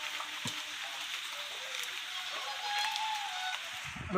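Steady hiss of rain falling, with a faint voice heard briefly near the end.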